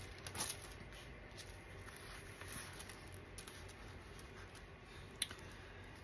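Faint rustling and light clicks of diamond-painting canvases with plastic cover film being handled and shuffled, with one sharper click about five seconds in.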